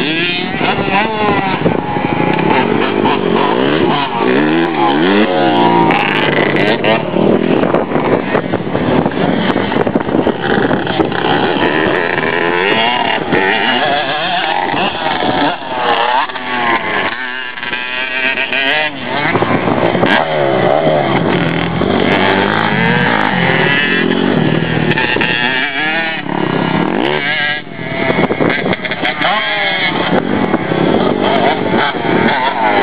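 Dirt bike engines running and revving, their pitch rising and falling over and over as the bikes accelerate and back off, dropping away briefly a couple of times.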